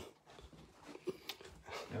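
A few faint clicks and light knocks in a quiet room, the handling noise of a phone being moved as it films.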